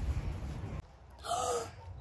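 A person's short, breathy gasp about a second in, after a low background rumble cuts off abruptly.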